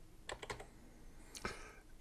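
A few faint clicks of a computer keyboard, in two small clusters about a second apart.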